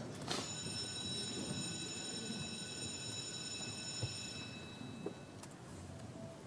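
Steady high-pitched electronic tone lasting about four seconds, then fading, sounding just as the chamber's electronic voting machine is unlocked to open the vote. Faint room hush with a few small clicks follows.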